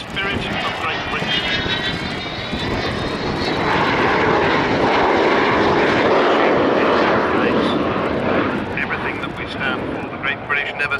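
Avro Vulcan's four Rolls-Royce Olympus turbojets during a display pass. A high, many-toned whine rises in pitch over the first few seconds, then the engine noise grows to its loudest around the middle and eases off near the end.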